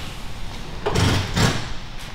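Two dull thuds in quick succession, about a second in and half a second apart.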